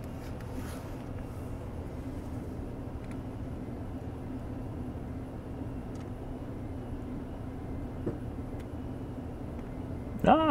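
Steady low background hum, with a few faint ticks.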